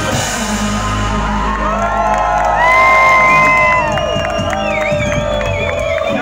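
A live pop band's music with a crowd cheering and whooping. A loud held high note comes in about two and a half seconds in and breaks off just before four seconds, with wavering high shouts after it.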